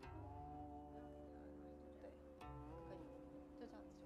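Soft background music on a plucked string instrument: a chord of notes struck at the start and another about two and a half seconds in, each ringing on and slowly fading.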